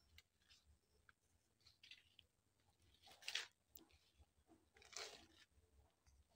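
Near silence: room tone broken by a few faint rustles, the two clearest about three and five seconds in.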